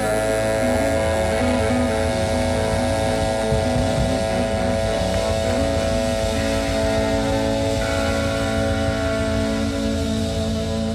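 Live blues-rock band of saxophone, electric guitar, electric bass and drums holding one long sustained chord, the drawn-out ending of a song. A higher sustained note joins about eight seconds in.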